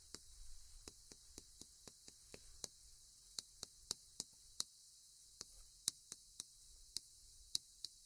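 Chalk writing on a chalkboard: faint, irregular clicks and taps as the chalk strikes the board, sparse at first and coming a few times a second from about two and a half seconds in.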